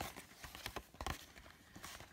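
Cardboard model-kit box being turned over in the hands: faint handling rustle with a few light knocks, the clearest about a second in.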